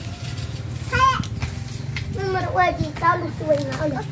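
Young children's voices, a high-pitched call about a second in, then babbling and chattering, with no clear words. A steady low hum runs underneath.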